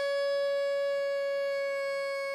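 Harmonica holding one long, steady note.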